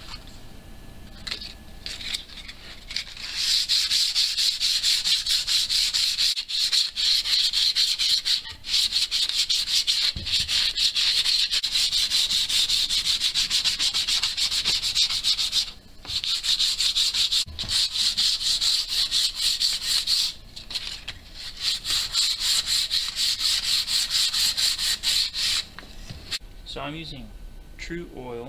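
Wooden mountain banjo kit parts being hand-sanded with 220-grit sandpaper: rapid back-and-forth strokes of the paper across the wood. Quieter paper handling comes first, the sanding starts about three seconds in, and it stops twice briefly in the second half.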